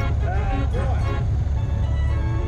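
Vintage tractor engines running as they drive past close by, a steady low rumble, under a voice and music.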